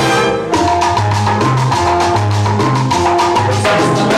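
Live salsa orchestra playing an instrumental passage: dense, steady percussion over a bass line that moves between held low notes, with horn and piano tones above.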